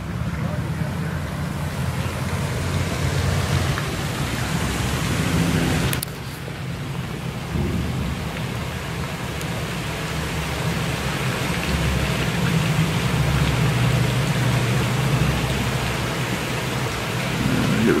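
Wind buffeting the microphone outdoors: a steady rushing noise with a heavy low rumble, dipping briefly about six seconds in.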